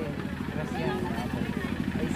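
Faint, distant voices from people around the field over a steady low engine-like rumble.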